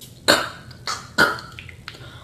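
A person coughing: three short bursts within about a second.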